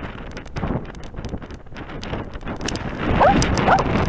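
Rubbing, knocking and clicking of a camera strapped to a dog as the dog moves about, with wind on the microphone. Near the end come a few short rising whines.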